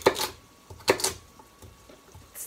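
Two sharp clatters of a cooking utensil against a frying pan, about a second apart.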